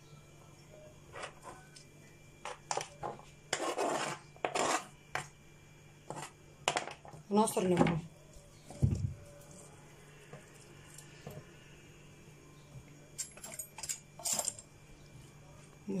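Scattered short clinks and knocks of a utensil and hand against a glass bowl of sliced tomatoes and chopped green pepper as the salad is put together.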